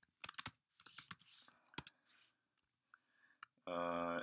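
Computer keyboard keystrokes clicking, a quick run at first and then scattered single clicks, as a name is typed. A voice starts near the end.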